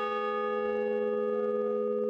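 A large bronze bell ringing, several steady overlapping tones held with little fade.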